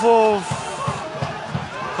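A man's drawn-out excited cry of "of", falling in pitch and ending about half a second in, followed by quieter outdoor background noise with a few dull low thumps.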